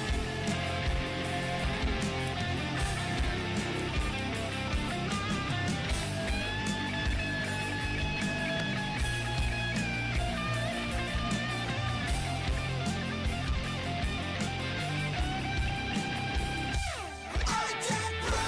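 Alternative metal song playing, with electric guitars and drums. About 17 seconds in, the music briefly drops away with a downward sweep, then comes back.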